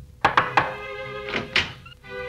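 Knuckles knocking on a closed door: three quick knocks, then two more about a second later, over background music.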